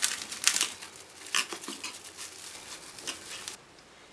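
Plastic cling wrap crinkling and crackling in irregular bursts as it is handled and wrapped around a ball of dough, stopping abruptly near the end.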